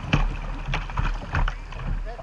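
Kayak running white-water rapids: rushing water with irregular splashes from paddle strokes about every half second, over a low rumble of water and wind on the camera's microphone.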